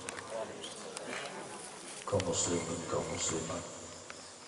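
A faint, indistinct man's voice over a sound system, with a steady high-pitched whine underneath and two brief brighter swells of it near the end.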